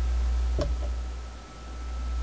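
Low steady background hum that dips briefly about one and a half seconds in, with a single light click about half a second in.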